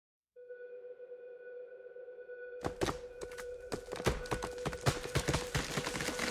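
Produced intro sound design: a steady sonar-like tone comes in just after the start. From about two and a half seconds, a growing crackle of sharp clicks and snaps joins it, building into a rising rush.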